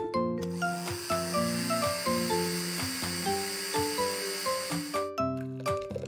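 Cartoon blender running: a steady high hiss starts about half a second in and stops about five seconds in. It plays under children's background music, a run of short single notes stepping up and down.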